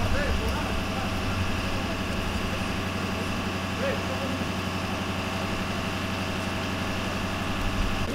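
A vehicle engine idling steadily, a constant low hum with faint, indistinct voices over it.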